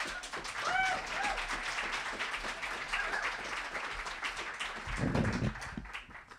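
Audience applauding, with one voice briefly cheering about a second in. The applause dies away near the end.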